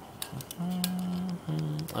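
A man's voice holding a level, wordless hum twice, a long one and then a shorter one, while a digital caliper's metal jaws tick against the cast-iron flange of an exhaust manifold a few times.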